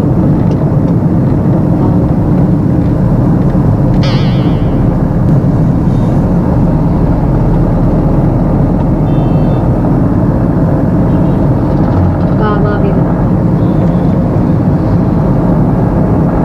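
Steady road and engine noise heard inside a moving car's cabin, loud and low. A short warbling high tone sounds about four seconds in, and brief faint high tones near nine seconds.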